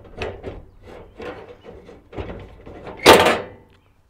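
Metal tools scraping and clicking against the sheet-metal cowl of a 1967-72 Chevy truck as a retaining clip is pried off a wiper transmission arm, with a louder clunk about three seconds in as the arm comes free.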